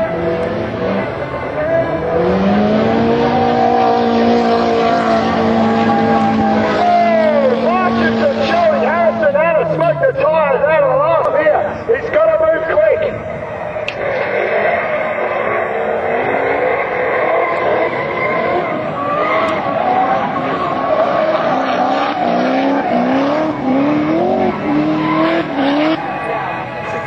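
Drift cars' engines revving hard with tyre squeal as two cars slide through a corner in tandem. The engine note climbs and holds high for a few seconds, wavers rapidly with the throttle around the middle, and rises again in short repeated climbs near the end.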